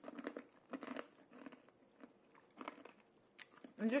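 Hard, sugar-coated candy being crunched and chewed in the mouth, in a string of irregular crunches.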